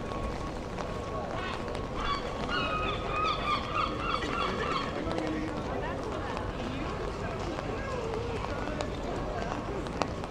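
Busy pedestrian street ambience in the rain: passers-by talking over a steady hiss of wet-street noise. A higher-pitched voice stands out for a few seconds about two seconds in.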